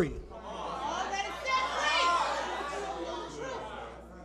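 Church congregation answering at once, many overlapping voices calling out and murmuring, echoing in a large hall; it swells to its loudest about two seconds in and dies away toward the end.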